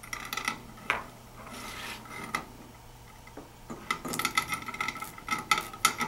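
Thin steel support cable being threaded through a sheet-metal box-support bracket: wire scraping and rubbing against the metal, with light clicks and clinks, busiest in the last two seconds.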